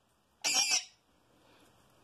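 Black lory giving one short, harsh squawk about half a second in.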